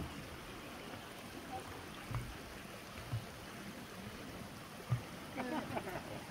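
Shallow spring-fed stream flowing steadily over stones. A few low thumps come through it, and people's voices come in near the end.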